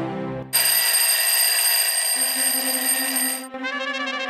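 Alarm clock bell ringing loudly and steadily for about three seconds, starting sharply half a second in and cutting off suddenly.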